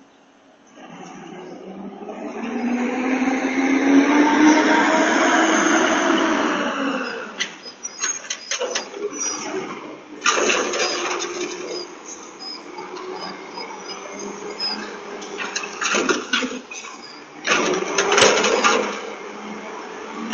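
Garbage truck pulling up, its engine note rising and then falling over several seconds, followed by clanks and bangs as it works at the curbside bins.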